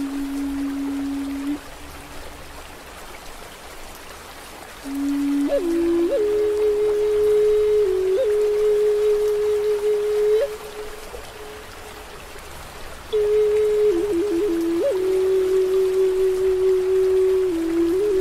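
Slow ambient meditation music: a single soft, clean tone holds long notes that step up, then back down, with brief flicks in pitch between them. It sounds over a steady hiss like rain or running water. The tone drops out twice for a few seconds.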